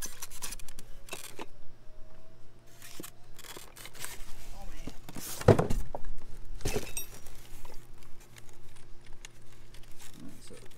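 Cardboard box and styrofoam packing being handled as an electric trailer jack is lifted out: irregular rustling, scraping and knocking, loudest about five and a half seconds in and again about a second later.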